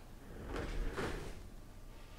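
A brief sliding, rustling handling noise in two swells about half a second apart, near the middle.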